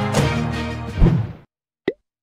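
Background music with sustained notes and a beat, cutting off about one and a half seconds in, followed near the end by a single short pop sound effect.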